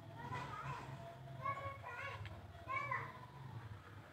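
Children talking and calling in high-pitched voices, loudest twice, about a second and a half and nearly three seconds in, over a low steady hum.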